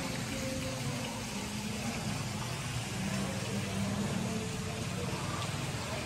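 Indistinct murmur of voices over a steady background hiss, with no clear words.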